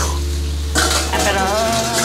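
Metal clattering and clinking of wire fryer baskets against a steel bowl and the deep fryer as freshly fried potatoes are lifted out of the oil, with some sizzling from the oil. A steady low hum under it fades away near the end.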